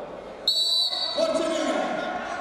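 A referee's whistle blown once, a short shrill blast of about half a second that stops the wrestling on the mat, followed by voices in the hall.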